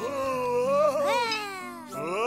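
Wordless voice of a cartoon character: one long, wavering call that glides up and down in pitch, with a new rising call starting near the end. Soft background music plays underneath.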